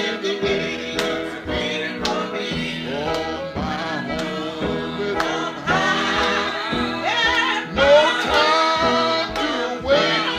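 Acoustic guitar picked in a steady rhythm under a man singing a gospel song, his voice holding long bending notes in the second half.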